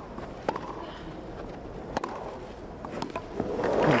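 Tennis rally on a grass court: sharp racket strikes on the ball about a second and a half apart, with fainter ticks of bounces and footwork over a low crowd murmur. Crowd applause swells near the end as the point is won.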